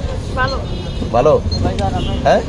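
A person's voice in a few short phrases over a steady low hum.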